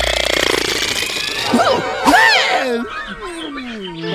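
Cartoon sound effects: a harsh, fast rattling screech, then squeaky, warbling voice-like sounds, and a long whine that falls steadily in pitch near the end.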